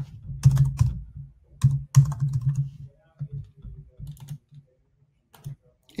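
Typing on a computer keyboard: irregular runs of key clicks, busiest in the first three seconds and sparser toward the end.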